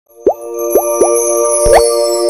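Logo-intro sound effect: three quick bubbly pops, each a short upward blip, then a larger rising swoop with a low thump, over a held synthesized chord.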